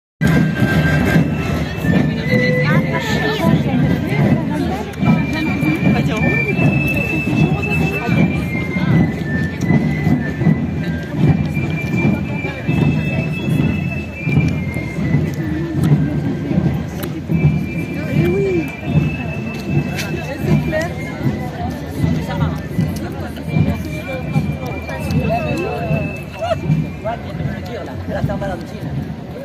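Provençal tambourinaires playing a marching tune: a high pipe melody of held, stepping notes on the galoubet over the beat of tambourin drums, with crowd chatter around it.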